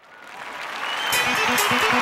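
Audience applause and cheering swelling up from silence over the first second, with music coming in underneath: a bass line and a steady beat of high strikes.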